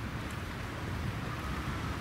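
Steady low rumble of outdoor background noise with a faint even hiss, without clear events.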